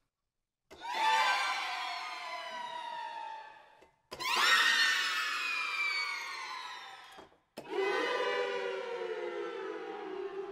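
Sampled string ensemble from ProjectSAM Symphobia's 'Ghostly Strings – Apparitions' patch playing three falling string glissandi one after another, each sliding steadily down in pitch and fading over about three seconds, with short gaps between them.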